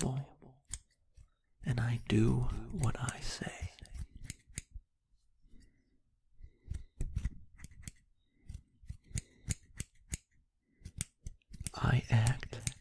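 Scissors snipping, a run of short crisp cuts coming irregularly a few times a second, with a soft-spoken voice in the first few seconds.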